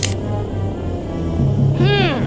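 Film-score underscore holding a low sustained drone that shifts up in pitch about halfway through. Near the end a short high cry, like a meow, glides downward in pitch.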